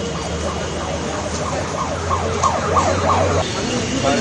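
A siren with a fast up-and-down warble, growing louder about two seconds in, over a steady low hum that stops near the end.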